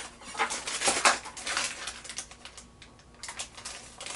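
Plastic blind-bag packets crinkling and rustling in hands as they are handled and opened, an irregular run of crackles that thins out for a moment past the middle and picks up again near the end.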